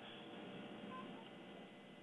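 Near silence: the faint hiss of a telephone-quality audio line, with a very faint short tone about a second in.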